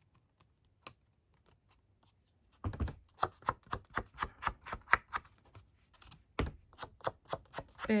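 Foam ink blending tool dabbing Twisted Citron Distress ink onto the edges of stamped cardstock, a run of quick soft taps about three a second that starts a little under three seconds in.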